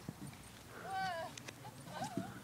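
Faint hoofbeats of a horse ridden across a sand arena, a few soft ticks, with a short faint voice about halfway through.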